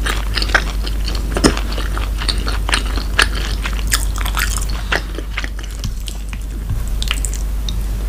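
Close-miked chewing of a mouthful of soft, cheesy shrimp gratin: irregular wet mouth clicks and squishes that thin out briefly past the middle.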